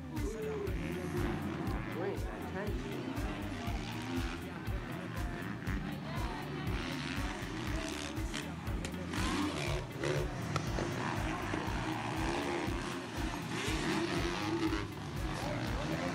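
Several motocross motorcycles' engines revving as they race, their pitch rising and falling as the riders work the throttle, heard through a phone recording. Background music with a steady beat runs underneath.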